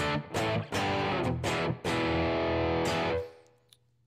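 Electric guitar played through a Headrush amp modeller set up as a Fender Twin with the S1 Drive overdrive block engaged: several quick strummed chords, then a final chord left to ring for about a second before it dies away shortly after three seconds in.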